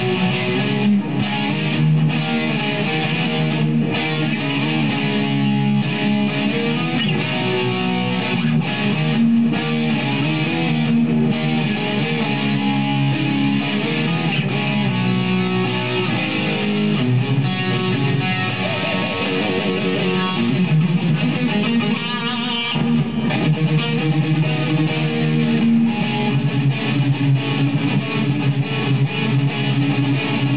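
Fender Lonestar Stratocaster played with a distorted metal tone through an amp, on its Seymour Duncan Distortion bridge humbucker: continuous chugging riffs of chords and single notes.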